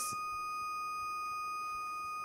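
A steady, high-pitched electronic tone, like a held beep, over faint hiss, with no other sound.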